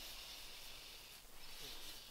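Quiet room tone: a faint steady hiss, with soft breathy noises from about a second in.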